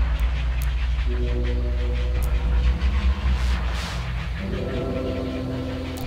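Dark ambient drone music: held synth tones over a deep, steady rumble, with a swell of hiss rising about three and a half seconds in.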